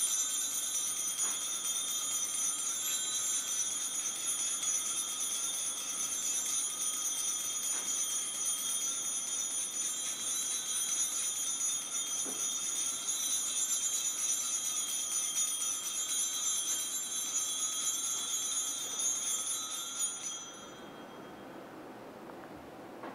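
Altar bells, a cluster of small handbells, shaken in a continuous jingling during benediction with the Blessed Sacrament. The ringing stops suddenly near the end.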